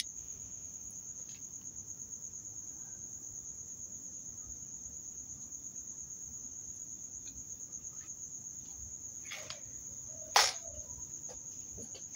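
Crickets chirring in a steady, continuous high-pitched trill. A single sharp crack stands out about ten seconds in, with a fainter click a second before it.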